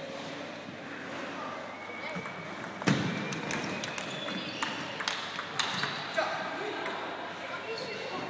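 Table tennis rally: the ball clicking sharply off the paddles and the table, several knocks a fraction of a second apart, the loudest about three seconds in. A murmur of voices runs underneath.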